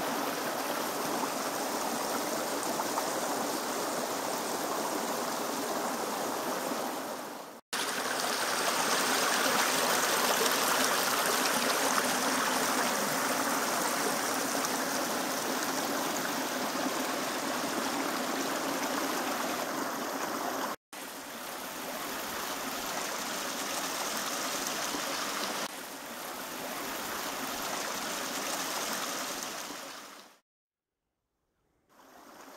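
A small forest stream, partly under ice, running with a steady rush of water. The sound cuts out for an instant twice, and drops a little in level near the end.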